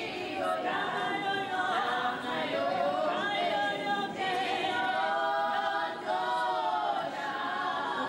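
A choir of women singing a hymn unaccompanied, in long held notes.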